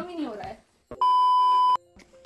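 A single steady electronic beep, a pure tone lasting under a second, starting about a second in and cutting off abruptly.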